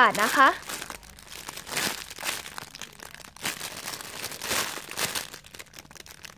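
Clear plastic bag around a squishy toy crinkling as hands lift and turn it, in irregular rustles.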